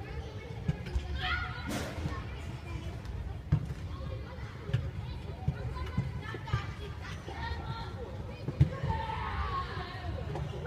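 Indistinct voices in the background, coming and going in short phrases, over a steady low rumble with a few short low thumps.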